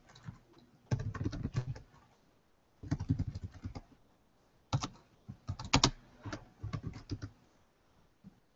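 Computer keyboard being typed on, in three short bursts of keystrokes with pauses of about a second between them.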